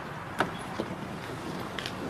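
A few sharp clicks and knocks over steady background noise: the loudest comes about half a second in, with lighter ones near one second and near the end.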